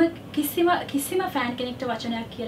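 Only speech: a woman talking.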